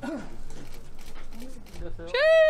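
Small pet dogs giving short whimpers, with people talking around them.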